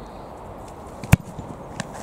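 A football struck hard with a boot on a shot at goal: one sharp, loud thud about a second in, followed by a fainter knock near the end.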